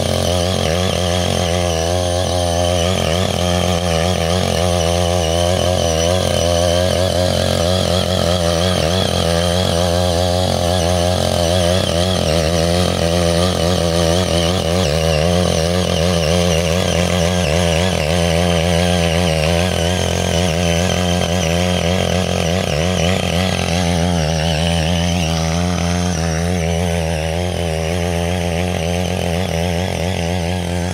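Small petrol engine of a Ching Yee CY80G walk-behind mini cultivator running steadily at high revs, its pitch wavering slightly as the tines churn through grass and wet soil.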